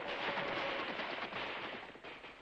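Rapid gunfire mixed with galloping horse hooves, a dense crackle of shots and hoofbeats that fades out near the end.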